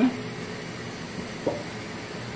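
Steady background hiss, with one brief voice sound about a second and a half in.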